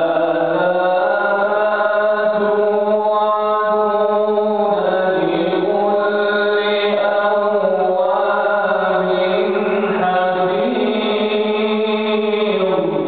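A man reciting the Quran in a melodic chant, one long unbroken phrase held on slowly shifting notes.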